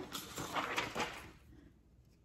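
Sheets of thin computer paper rustling softly as they are handled and laid down over an inked printmaking plate, fading to near silence after about a second and a half.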